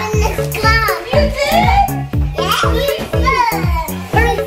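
Upbeat background music with a steady kick-drum beat about twice a second, with young children's high voices calling out over it.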